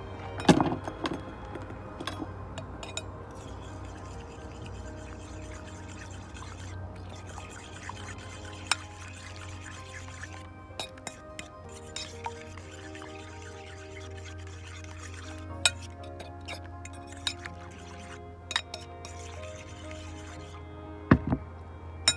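A fork clinking against a bowl as eggs are beaten, in scattered sharp taps, the loudest about half a second in and near the end, over steady background music.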